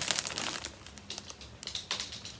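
Clear plastic wrapping on a gift package crinkling as it is handled, a run of irregular crackles that thins out midway, with a few sharper ones near the end.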